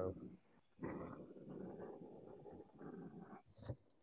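Handheld gas torch flame running faintly with a rough rushing sound, stopping about three and a half seconds in.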